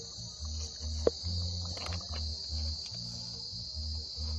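Steady high-pitched chorus of crickets or similar insects, with the rhythmic bass of background music pulsing underneath and a single click about a second in.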